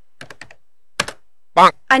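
Keyboard keys clicking: a few light taps, then one sharp keystroke about a second in, followed by a short, loud, buzzy tone that signals an invalid choice.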